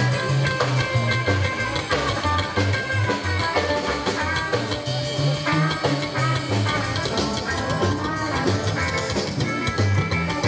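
Live rockabilly band playing: electric guitar, drum kit and a double bass stepping from note to note in a steady beat.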